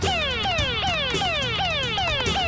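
Electronic alarm sounding: a repeated falling tone, restarting just under three times a second. It is the computer's error alarm for an overload.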